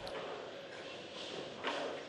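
Low, steady background noise of a bowling alley hall after a shot, with a faint short voice-like sound near the end.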